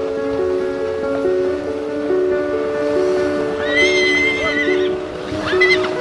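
Background music of repeating, overlapping held notes, with a horse whinnying twice: a long call about four seconds in and a shorter, quavering one near the end.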